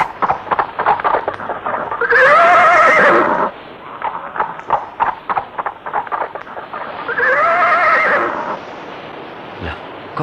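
Horse hooves clopping, with two long whinnies: one about two seconds in and another about seven seconds in, each lasting over a second.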